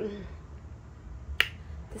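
A single sharp click about a second and a half in, made while a pair of plastic-framed eyeglasses is being put on, over faint room tone.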